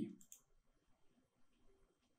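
Near silence with a couple of faint computer mouse clicks about a quarter of a second in, then one tiny click later.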